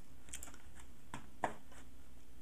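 About five scattered light clicks of someone working a computer's mouse and keys, the sharpest about one and a half seconds in, over a steady low hum.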